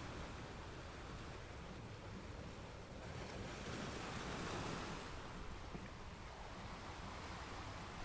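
Steady rushing wind noise on the microphone of a slowly moving open vehicle, swelling louder around the middle.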